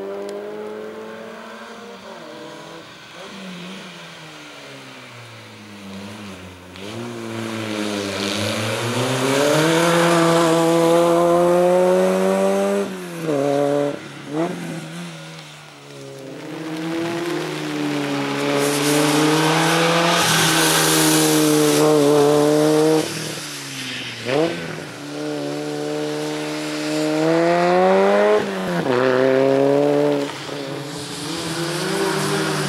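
Citroën Saxo race car's engine revving hard in a slalom run. It climbs in pitch again and again, broken by sudden drops as the driver shifts or lifts between the cone chicanes, and is loudest as the car passes close.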